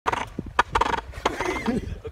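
Several sharp clicks and knocks, then a voice making a wavering, sliding non-word sound near the end.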